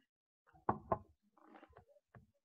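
Two quick knocks about a fifth of a second apart, a little under a second in, followed by softer scattered noise.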